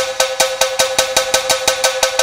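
A ringing struck percussion instrument in a music track, hit in quick, even strokes about five or six times a second, each stroke with the same bright ringing pitch.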